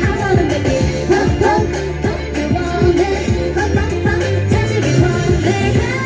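K-pop dance track with female vocals over a steady kick-drum beat, about two kicks a second, played loud through a busking speaker.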